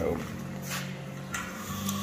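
A tape measure being hooked onto a steel box-section tube and pulled out, heard as two brief scraping, rustling noises about a second apart, over a steady low hum.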